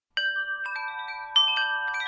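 Chimes ringing: a string of struck, bell-like notes that start suddenly out of silence and ring on and overlap, with a louder strike about one and a half seconds in.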